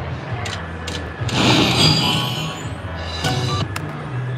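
Konami Prosperity Treasures video slot machine playing its game music and sound effects as the reels spin and stop. There are short clicks and a louder flourish with high tones about a second and a half in, over a steady low casino hum.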